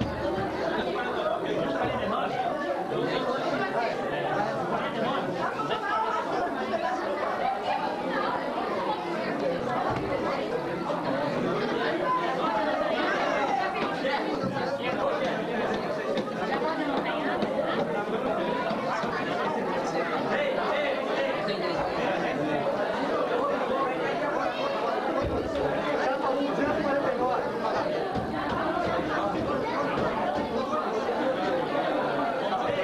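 Many people talking at once in a steady, indistinct hubbub of voices.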